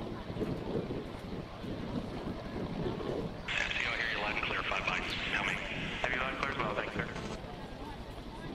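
Steady rushing noise of wind and open-air ambience at the shuttle launch pad. About three and a half seconds in, a brighter hiss joins; it cuts off shortly before the end.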